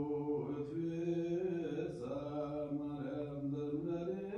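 A man's voice chanting Ethiopian Orthodox liturgy, holding each note and stepping between a few pitches.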